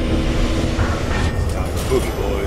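Film sound design: a deep, steady rumble of a sci-fi gunship's engines and distant battle, with faint higher hisses.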